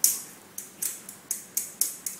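Metal mesh sieve of flour being tapped and shaken by hand to sift it into a bowl: about six short, sharp rattling taps, roughly three a second, each fading quickly.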